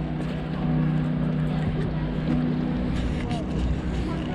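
Calm background music holding long low notes, over outdoor street noise and people talking.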